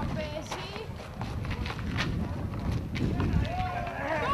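Voices calling out across a basketball court, over scattered short knocks from the bouncing ball and players' running feet.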